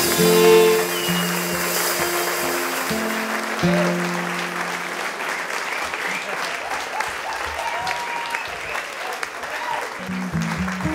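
The last notes of a song by fiddle, acoustic guitar and drums ring out and fade over the first few seconds, while the audience applauds, with a few whoops.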